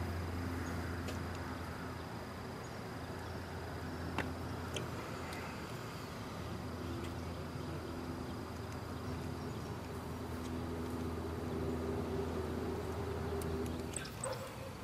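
Faint outdoor ambience: a steady low hum under an on-and-off buzzing drone, a thin steady high whine, and a couple of light clicks about four seconds in.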